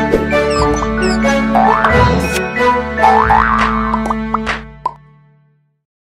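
Upbeat cartoon-style jingle music for an animated logo sting, with quick rising whistle-like slides laid over it twice. It fades out about five seconds in.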